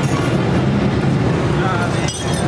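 A steady low rumble with people talking in the background.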